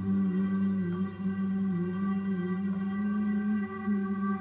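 Dhrupad singing: a male voice holds a long note that slowly wavers and glides in pitch, over a bowed double bass holding a steady low drone.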